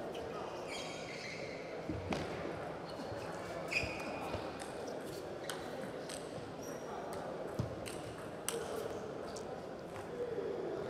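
Rally sounds of a doubles table tennis point: a plastic ball clicking off bats and the table at irregular intervals, with a few short shoe squeaks on the court floor, over the murmur of a large hall.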